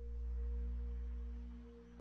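A steady low drone of a few held tones over a constant low hum, swelling slightly and fading toward the end.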